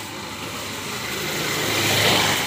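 A motor vehicle approaching along the road, its engine and road noise growing steadily louder toward the end.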